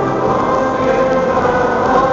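A large mass choir of many amateur voices singing a chorale together, holding long sustained notes, with the sound carried in the long reverberation of a big church.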